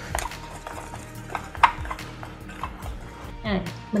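Dry flour coating mix being stirred in a glass bowl, with scattered light clicks and taps against the glass.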